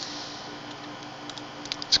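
A few quick, sharp computer mouse clicks in the second half, over a steady faint background hum.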